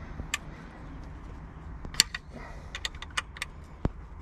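Small metallic clicks and tinks of an Allen key and wrench working the nut on a steering wheel's metal mounting bracket. There is a sharp click about two seconds in, then a quick run of clicks and one more near the end.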